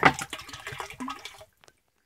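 Muddy, pumped river water pouring from an inlet spout into a large filter tank, splashing onto the water surface. The splashing cuts off abruptly about a second and a half in.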